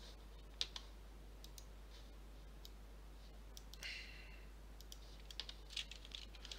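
Sparse computer mouse and keyboard clicks while modelling in CAD software, a few single clicks early on and a quick cluster near the end, with a short soft hiss about four seconds in.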